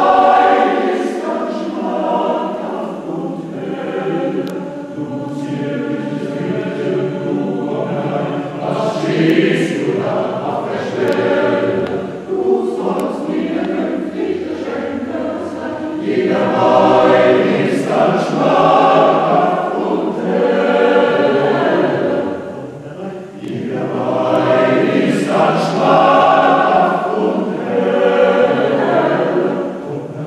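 Men's choir singing in parts, with sustained chords that swell louder twice in the second half.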